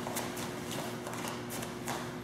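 A few light taps and shuffles of grapplers repositioning on a training mat, over a steady hum of room tone.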